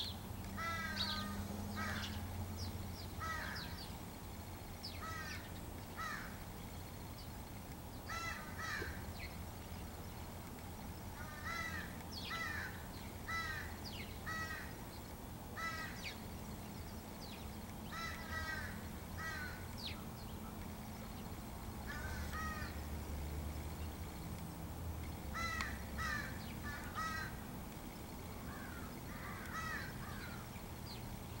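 Crows cawing repeatedly, short calls coming every second or two, often in runs of two or three.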